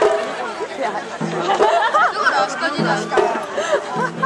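A crowd of festival participants talking and shouting over one another, with festival music playing underneath.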